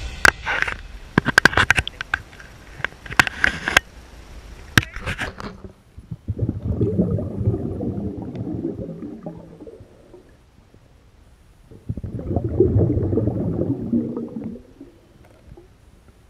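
Sharp clicks and knocks of a camera being handled for the first five seconds or so. Then muffled low rumbling and gurgling of water heard through a submerged camera, in two stretches of a few seconds each with quieter gaps between.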